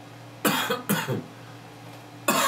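A man coughing twice in quick succession, about half a second apart, starting about half a second in.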